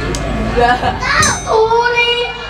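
A child's voice through a stage microphone and PA, talking with shifting pitch and then drawing out one long held note over the last half second.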